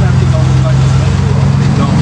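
Steady low engine hum of road traffic, with voices faintly over it.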